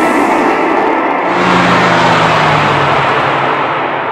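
Advert soundtrack: the music gives way about a second in to a loud, sustained swell of noise, with a low tone slowly falling beneath it.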